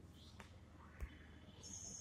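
Near silence: room tone with a low steady hum, one short click about a second in, and a faint high-pitched tone near the end.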